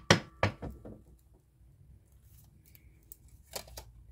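Tarot cards being shuffled by hand: a quick run of card slaps that tapers off within the first second, then quiet, then a couple of card snaps shortly before the end as cards are drawn from the deck.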